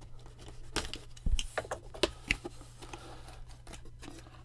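Cardboard mailer box being opened by hand, the tape on its sealed sides broken and the lid flaps lifted: scattered scratchy clicks and taps over light rustling, busiest in the first half.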